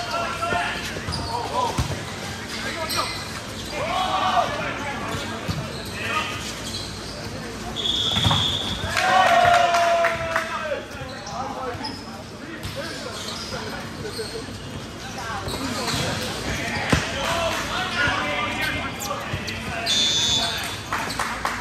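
Indoor volleyball rally in a large gym: sharp smacks of the ball off hands and floor, echoing in the hall, with players shouting to each other throughout. A brief high-pitched squeal comes about eight seconds in.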